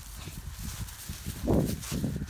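Footsteps on dry grass, an uneven patter of low thuds, with a louder thump about one and a half seconds in.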